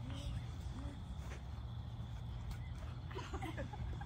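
Faint, scattered chatter of young players over a steady low outdoor rumble.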